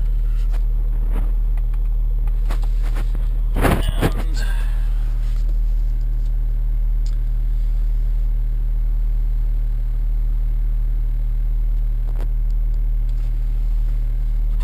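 BMW X5 35d's diesel engine idling, heard inside the cabin as a steady low hum. A brief cluster of knocks comes about three and a half seconds in.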